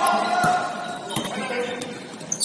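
Basketball dribbled on a hardwood gym floor, a few bounces roughly half a second apart, echoing in the hall, with players' voices calling out.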